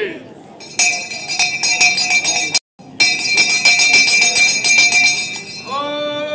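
A brass handbell rung rapidly, many quick strokes with a steady ringing tone, in two runs split by a sudden moment of dead silence. A man's loud pitched call follows near the end.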